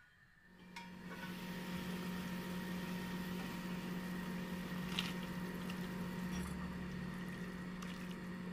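Pot of chicken and vegetable broth simmering on a gas stove: a steady bubbling hiss over a low steady hum, with a few small pops, starting after a moment of silence.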